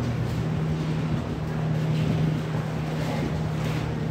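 A steady low mechanical hum, holding two even tones, over a faint rushing background.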